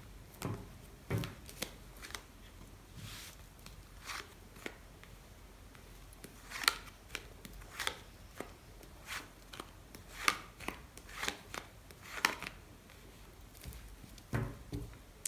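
Tarot cards being dealt one at a time and laid face down on a tabletop, with the deck handled between deals: irregular light snaps and taps, with a brief soft rustle about three seconds in.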